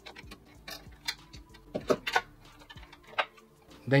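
Thumb screws on a PC case's power supply mounting frame being undone and the metal frame lifted away: a scattered series of small clicks and ticks, a few sharper ones around one to two seconds in.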